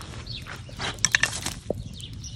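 Metal hook clinking and scraping against a cast-iron Dutch oven buried in hot embers and charcoal, with a quick cluster of clinks about a second in and a single click near the end.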